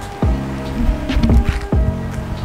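Background music: held notes over a bass beat about twice a second.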